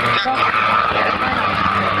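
Rocket motor of the WIRES#014 winged experimental rocket firing as it climbs, about five to seven seconds after liftoff: a loud, steady rushing noise.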